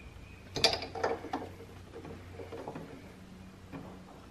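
Socket ratchet clicking in short strokes as an oil drain fitting is snugged into the engine block, loudest about half a second in and trailing off, with one more click near the end.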